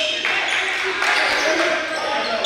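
Basketball game noise in a large gym: several voices calling out at once over the bounce of a ball on the hardwood floor, echoing through the hall, starting suddenly.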